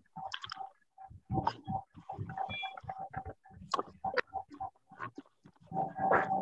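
Indistinct, choppy voice over a video-call connection, breaking up into short fragments with brief dropouts in between.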